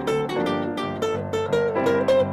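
Live jazz: an archtop guitar plays a quick run of plucked single notes, with a grand piano accompanying.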